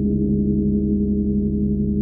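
52-inch Chau gong sounding a deep, steady drone, its low hum throbbing slowly, with no new strike.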